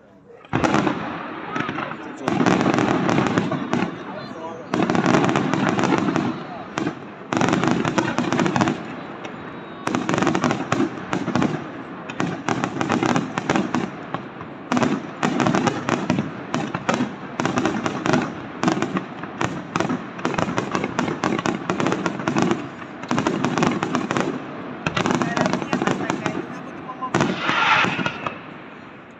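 Aerial fireworks display: a rapid, near-continuous barrage of shell bursts and crackling, coming in clusters with short lulls between them. It starts about half a second in and tails off near the end.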